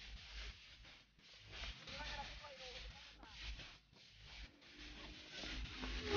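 Faint, distant voices calling out, heard over a low rumble, loudest about two seconds in.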